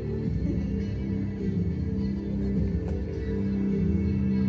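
A live band plays a slow ambient interlude: held low notes from amplified electric instruments that shift slowly, with no drum beat.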